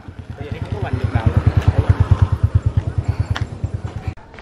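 Small motorbike engine running with a rapid, even putt-putt as it rides down a slope and passes close by, growing louder to a peak about halfway through, then fading.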